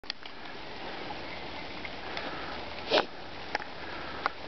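Quiet steady background hiss with one short sniff about three seconds in, and a few faint clicks.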